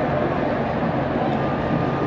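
Steady din of a large stadium crowd during a football match.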